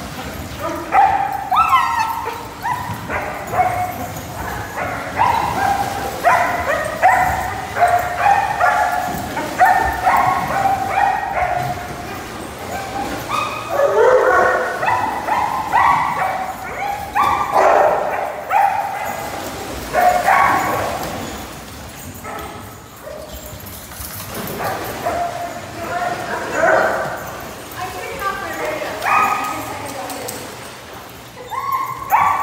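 A pack of dogs barking and yipping over one another, many short high calls in quick succession, thinning out for a few seconds past the middle before picking up again.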